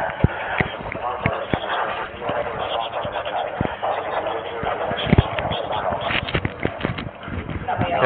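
Indistinct men's voices over irregular sharp knocks and rustling from a body-worn camera jostling against the wearer's gear as he moves.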